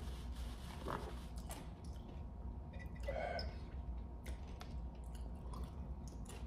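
Faint chewing and mouth sounds of a person eating, with scattered small clicks.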